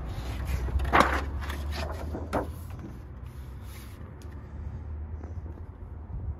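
A few short knocks and clicks of the Ford Bronco's rear door and cabin fittings being handled, the loudest about a second in, over a steady low hum.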